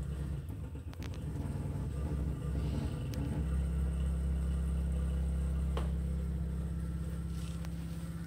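Xiaomi Mijia VDW0401M countertop dishwasher running with a steady low hum that grows stronger about three seconds in, with a couple of faint clicks. This is the strange sound the owner reports alongside a leak from the bottom of the machine.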